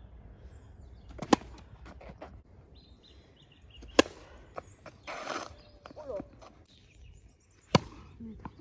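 Tennis ball hit hard with a racket: three sharp pops, about a second in, at four seconds, and loudest near the end. A brief rush of noise comes between the second and third.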